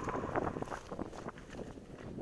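Dry plant stems rustling and scraping against the camera as the hiker pushes past them, in an irregular crackle, over a steady low rumble of wind on the microphone.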